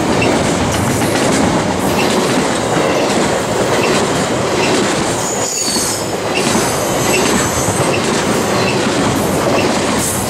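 Double-stack intermodal container train rolling past close by: steel wheels running on the rails with a regular clickety-clack. Brief high-pitched wheel squeal around the middle.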